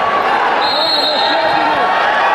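People's voices shouting repeatedly, echoing in a large sports hall over a steady background of crowd noise.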